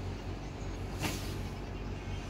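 A steady low hum, with a short swish of cloth about a second in as a printed saree is flicked open.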